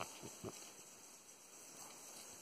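Near silence: faint outdoor background hiss with three soft knocks in the first half-second.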